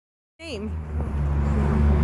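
A vehicle engine idling close by, a steady low rumble with a constant hum.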